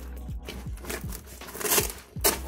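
Rustling and crinkling of a backpack's fabric roll top being unrolled by hand, in irregular short scrapes that grow busier near the end, over quiet background music.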